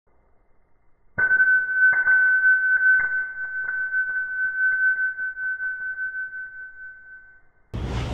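A CNC router bit dropped onto a concrete floor: a sudden metallic clink about a second in, then a single high ringing tone that slowly fades over about six seconds, with a few small ticks as it bounces and settles. A drop like this can chip or ruin the bit.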